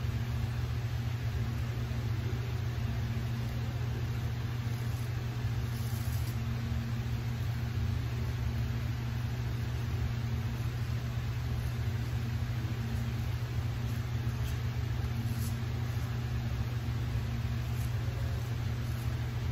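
Steady low mechanical hum with an even, unchanging pitch.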